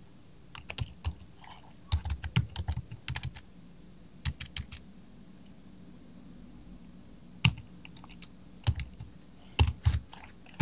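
Computer keyboard typing in quick runs of keystrokes, with a pause of about two seconds around the middle.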